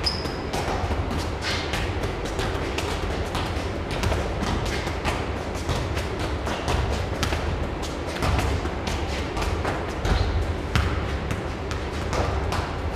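A football being juggled and bounced on a concrete floor: a quick, uneven run of ball thuds, two or three a second, echoing off bare block walls, over background music.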